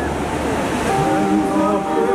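Steady rushing spray of a large choreographed fountain's water jets, heard together with the show's music. Held musical notes come in about a second in.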